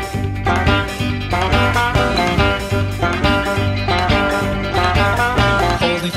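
Instrumental passage of a fast-paced folk-rock song: quick banjo picking over a full backing arrangement with a steady bass line.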